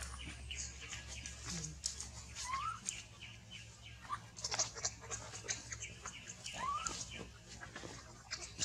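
A baby macaque gives two short, squeaky calls that rise in pitch, one about two and a half seconds in and a longer arched one near the end, over a steady crackle of dry leaves as it crawls about.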